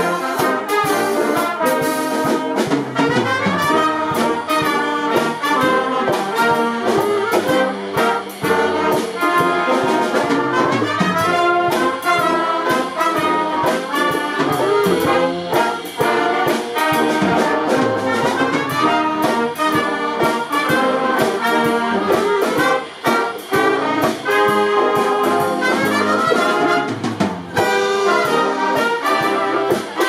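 Brass band music: trumpets and trombones playing a melody over a regular beat.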